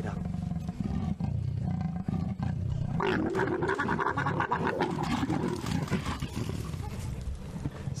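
A mating pair of leopards growling, with a louder snarling growl starting about three seconds in as the male mounts the female and lasting a few seconds. This is the growling and hissing that ends a leopard mating, which the guide puts down to the male's penile barbs hurting the female.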